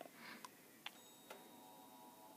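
Near silence: room tone with three faint short clicks about half a second apart.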